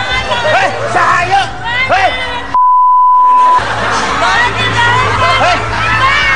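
Background music with excited, shouting voices, interrupted a little before halfway by a loud, steady, single-pitched electronic beep lasting about a second, during which all other sound drops out; then the music and voices resume.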